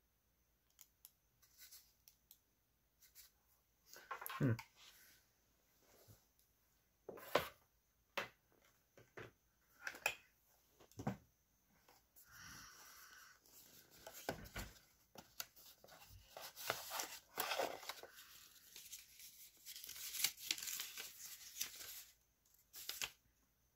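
Unboxing handling noise: scattered clicks and knocks as a Logitech G300S mouse, its cable and its cardboard box are picked up and set down, with a denser stretch of rustling packaging in the second half.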